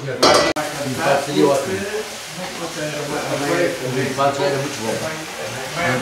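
Indistinct talking of people in the room over a light sizzling hiss from hot stir-fried vegetables just tipped from a wok into a steel pan. A short loud rush comes right at the start and cuts off suddenly.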